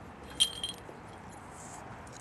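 A short, sharp metallic clink with a brief ringing tone about half a second in, followed by a few faint ticks, over a steady low background.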